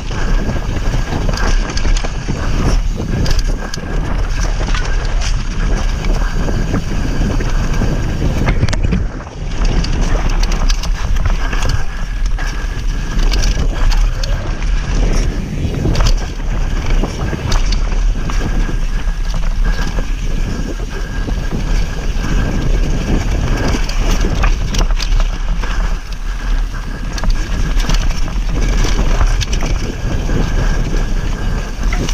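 Wind buffeting the microphone of a camera mounted on a mountain bike riding fast down a dirt singletrack, with the tyres rolling over dirt and leaf litter and the bike and camera mount rattling and knocking over bumps. It is loud throughout, easing briefly about nine seconds in.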